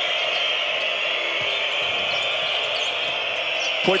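Steady din of a packed basketball arena crowd, with a basketball being dribbled on the hardwood court.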